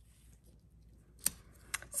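Hands handling a cardstock sentiment and a foam adhesive dimensional on a craft mat: mostly quiet, with one sharp click a little past halfway and two fainter ticks near the end.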